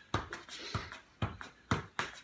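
Soccer ball bouncing on a concrete floor and being touched with the feet: four sharp thuds about half a second apart.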